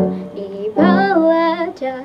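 A girl singing solo in an unamplified voice over backing music, holding a long note with vibrato about a second in.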